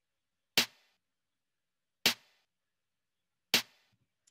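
A snare drum struck three times, about a second and a half apart, each hit short with a quick decay. It is much drier than the mid and far versions because it is rendered with Dolby Atmos's near binaural setting, which puts it close to the head.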